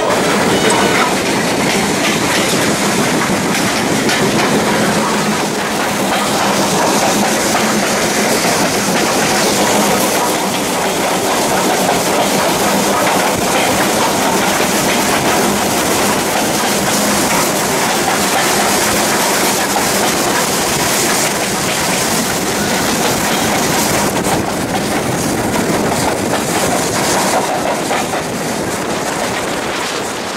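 A steam-hauled passenger train on the move, heard close to the track from an open carriage window: a steady, loud rushing rumble of wheels running on the rails.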